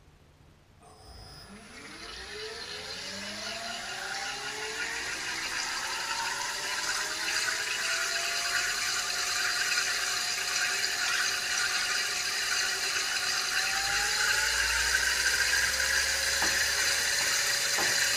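TM4 electric drive motor spinning up under throttle through its reduction gearbox, a whine of several tones that rises in pitch and grows steadily louder, levels off, then climbs again near the end. The differential's spider gears can be heard banging inside the gearbox.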